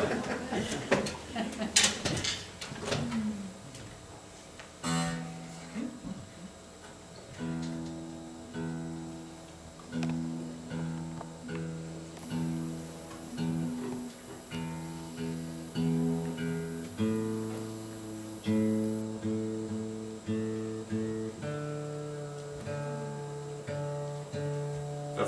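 Acoustic guitar being tuned: the same low notes plucked over and over about once a second while a peg is turned, moving to lower strings later on. The guitar has gone out of tune, which the player puts down to seasonal temperature and humidity changes.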